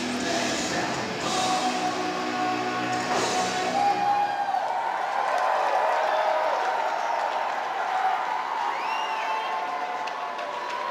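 Amplified live band music with crowd noise. About four seconds in the deep bass drops out, leaving higher steady tones and chatter.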